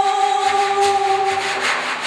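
A woman's voice holding one long sung note that fades about a second and a half in, over a swishing, rubbing sound from a hand drawn across the skin of a frame drum.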